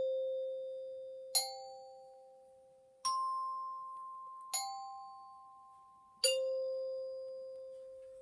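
Metal chime bars struck one at a time with a mallet: a low note already ringing, then four more about every one and a half seconds, leaping up to a middle note and a high note and back down through the middle note to the low one. Each note rings on and slowly fades under the next.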